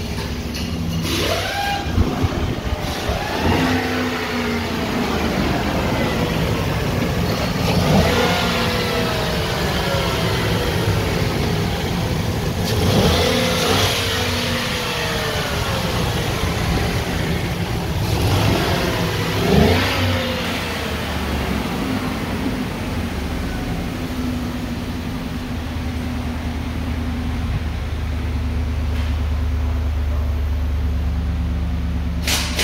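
2017 Ford F-350's 6.2-litre gas V8 idling and being revved five times in the first twenty seconds, each rev climbing in pitch and falling back to a steady idle.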